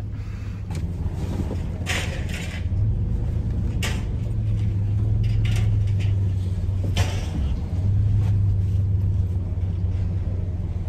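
Pickup truck engine running low and steady while reversing with a trailer, heard from inside the cab, swelling slightly twice. A few sharp clicks or knocks sound over it.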